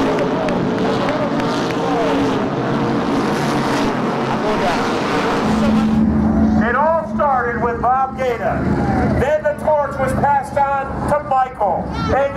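SK Modified race car engines running at speed on the track. About six seconds in the sound cuts to people's voices.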